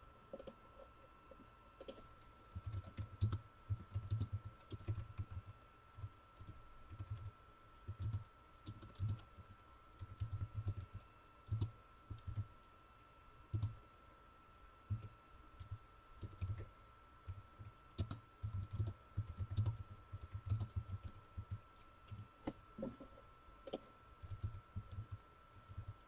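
Typing on a computer keyboard off camera: irregular bursts of quick key taps with pauses between them, starting about two seconds in.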